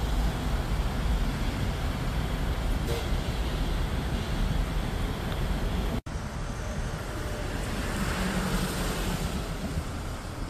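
Road traffic noise: a steady rumble of vehicles on the road alongside. It drops out for an instant about six seconds in, and swells near the end as a vehicle passes.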